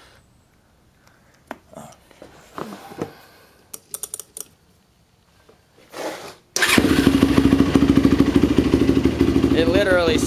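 A 2008 Yamaha YFZ450 quad's single-cylinder four-stroke engine fires up abruptly about two-thirds of the way in, with no long cranking, after a few faint clicks of handling. It then runs at a steady idle with a rapid, even beat.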